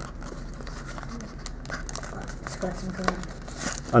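Foil and paper packaging crinkling and tearing as the layered wrapper of a trading card pack is peeled open by hand, with many small crackles throughout.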